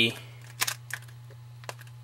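A few light plastic clicks from hands handling a SwitchEasy Rebel iPhone case: two close together a little over half a second in, a fainter one later. A steady low hum runs underneath.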